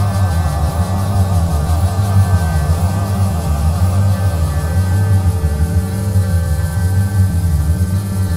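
Instrumental music without vocals: a heavy, steady bass with a wavering lead line over it that fades out about halfway through.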